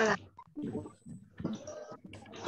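A child's short wavering vocal sound at the start, then faint scattered voices and noises with gaps between them, heard through a video call.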